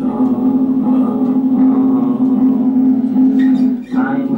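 Steel-string acoustic guitar strummed steadily, a chord ringing on throughout, with a brief drop just before the end as the strumming pauses.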